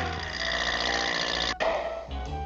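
Cartoon sound effect: a sustained, dense ringing rattle that cuts off suddenly about one and a half seconds in, then starts again near the end.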